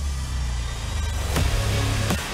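A time-trial bike whooshes past, loudest about one and a half seconds in, over background music with a deep bass.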